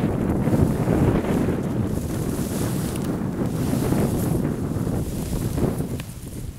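Wind buffeting the camera's microphone: a loud, low rumble that eases off just before the end.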